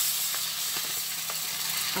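Whole coriander seeds poured in a steady stream from a plastic packet into a stainless steel bowl, the small hard seeds hissing as they land on the metal and on each other.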